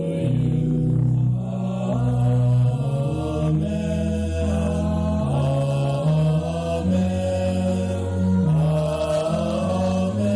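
Mixed choir of men's and women's voices singing in held chords that move from one chord to the next in steps.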